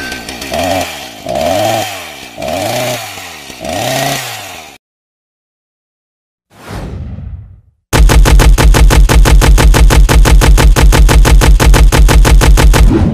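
Cartoon chainsaw sound effects: a chainsaw revs in four rising-and-falling surges, then stops. After a short falling swoosh, a loud engine-like drone with a rapid, even pulse starts about eight seconds in.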